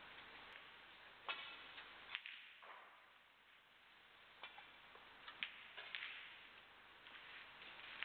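Snooker balls clicking: a cue tip striking the cue ball and balls knocking together, a few short sharp clicks over a low, steady hall hiss.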